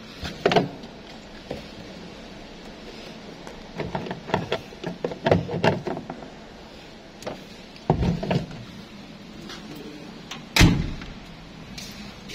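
Scattered knocks and clunks of a truck cab door and its fittings being handled, ending in one loud thump near the end.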